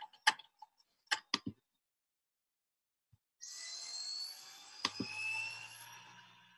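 A few sharp clicks in the first second and a half, typical of a computer mouse or keyboard being worked. About three and a half seconds in, a steady mechanical whirring-scraping noise with faintly rising tones begins, with one sharp click near the end.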